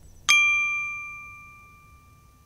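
A single bright bell-like ding from the channel's logo sting, struck about a quarter second in and ringing away over about a second and a half.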